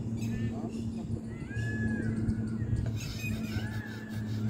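A few short animal calls that rise and fall in pitch, one group about a second in and another near the end, over a steady low hum.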